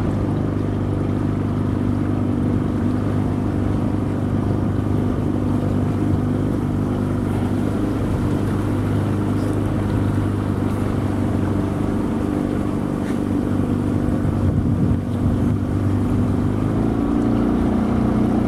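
Outboard motor on a small jon boat running steadily, its pitch rising slightly near the end.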